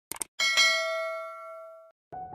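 Two quick clicks, then a single bell-like ding that rings out and fades, cut off suddenly near the end.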